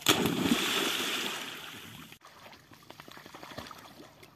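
Australian Cattle Dogs splashing through lake water: a loud churning splash right at the start that fades away over a couple of seconds, followed by lighter sloshing and small water ticks.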